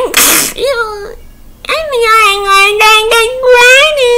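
A man's voice making a long, high-pitched falsetto "eeee" squeal, held with a slight wobble in pitch. It opens with a short breathy hiss and breaks off briefly about a second in before the held note starts again.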